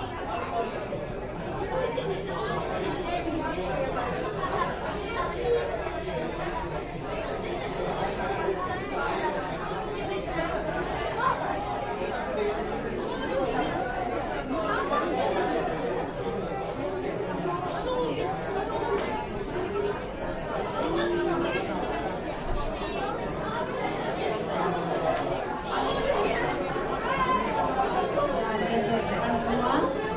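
Crowd chatter: many people talking at once in overlapping conversations, a steady babble with no single voice standing out.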